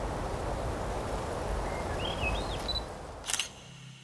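A single camera shutter click about three seconds in, over a steady outdoor rush with a few short high chirps.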